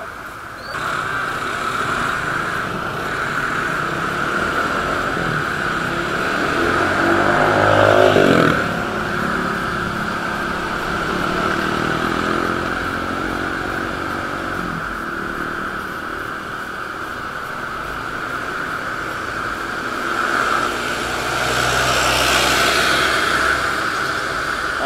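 Motorcycle riding in traffic, heard from a camera mounted on the bike: engine pulling away from a stop just under a second in, then running steadily with wind noise on the microphone. Around eight seconds in an engine note climbs and then drops sharply.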